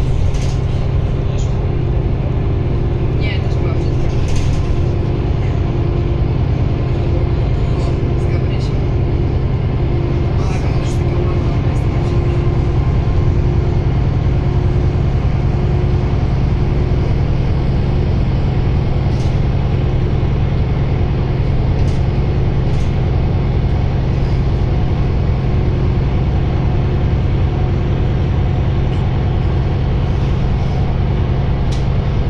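Inside a moving Solaris Urbino 12 III city bus: its Cummins ISB6.7 six-cylinder diesel and ZF EcoLife six-speed automatic gearbox running with a steady low drone, over road noise.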